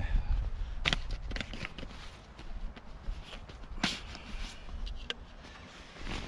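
Gear being handled and taken out of a haversack: rustling and soft handling noise with a few sharp clicks and knocks, the clearest about a second in and just before the four-second mark.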